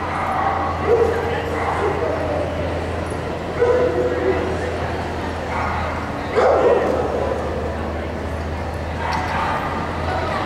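Dogs barking and yipping in short bursts, about a second in, near four seconds and again around six and a half seconds, over a steady low hum and background chatter.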